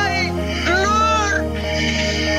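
A long meowing call that rises and falls, starting about half a second in, over background music with steady sustained tones and bass.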